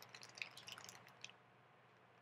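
Faint, scattered light ticks and crinkles of a plastic toy wrapper being handled, dying away after about a second, leaving near silence.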